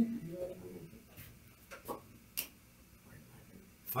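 A few light, sharp clicks about half a second to a second apart, over quiet room sound.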